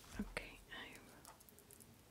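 Quiet handling of rhinestone strappy sandals: two soft knocks, a short breathy whisper, then faint small ticks as fingers pick at a sticker on the strap.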